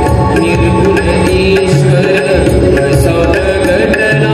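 Indian devotional bhajan music: a harmonium holding sustained notes over a steady tabla beat, with regular drum strokes and light high clicks keeping time.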